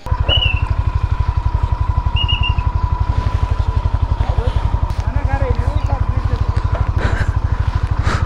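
Motorcycle engine idling at a standstill, its exhaust beating in an even pulse of about ten beats a second, close to the microphone.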